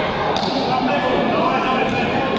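Many voices talking at once in a large hall, with a short knock about a third of a second in.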